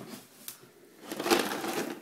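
Wrapping paper being torn and crumpled as a present is opened, a crackling rustle through the second half.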